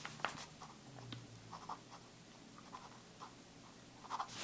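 Pen writing on a sheet of paper as capital letters are printed: short, faint scratching strokes, with a few sharper taps of the pen in the first second or so.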